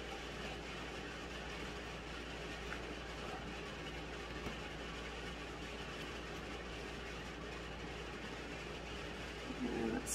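Steady low hum with a faint even hiss: room tone, with no clear sound from the work at hand.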